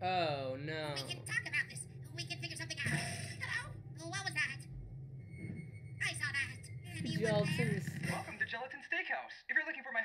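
Animated characters' voices speaking over quiet background music with a steady low drone.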